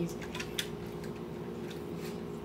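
Steady low hum of a quiet room, with a few faint light clicks in the first half as a plastic blister pack is handled.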